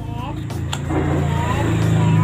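A motor vehicle's engine drone swells and then starts to fade, as of a vehicle passing by. There is a sharp click about two-thirds of a second in.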